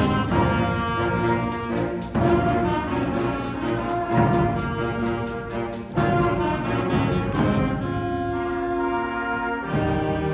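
School concert band of saxophones, flutes and tuba playing an instrumental piece, over a steady high percussion beat of about four strokes a second that stops about eight seconds in.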